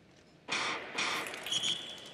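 Starting gun fires, and about half a second later a second shot recalls the skaters for a false start, with crowd noise swelling. A short high tone sounds near the end.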